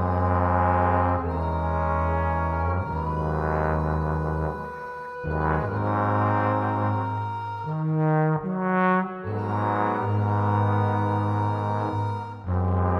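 Multitracked trombone choir playing slow, sustained chords in close harmony over a deep bass note, the chords changing every second or two.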